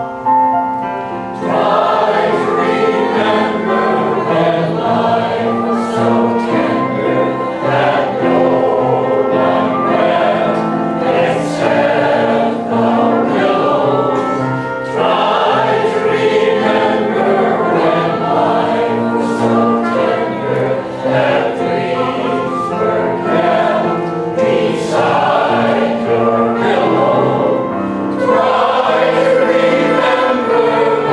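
Mixed choir singing a Broadway number with piano accompaniment; the full choir comes in about a second and a half in, after a short piano passage.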